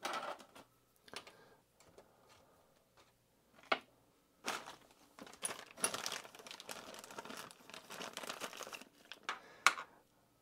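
Small clear plastic parts bag crinkling steadily as it is handled and opened, from about four and a half seconds in, after a few light clicks and rustles; one sharp click comes near the end.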